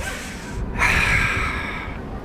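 A man breathing hard close to the microphone: a softer breath, then about a second in a longer, stronger breathy exhale that fades away, as he steels himself for a 720.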